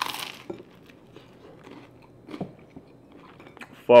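A crisp bite into toasted bruschetta bread, a short crunch right at the start, followed by quieter chewing with a few small crunches.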